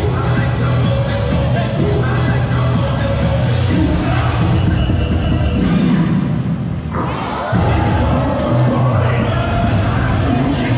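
Loud dance music for a routine, played through the sound system of a large hall, with a steady heavy bass beat and a crowd cheering over it. The music breaks off briefly about seven seconds in, then comes back.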